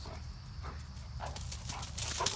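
A Great Dane's paws on dry grass and leaves as she plays with a rubber ball: a few soft scuffs, then a quick run of footfalls near the end, over a low steady rumble.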